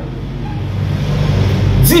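A steady low hum, engine-like, fills a pause in a man's talk; he starts speaking again just at the end.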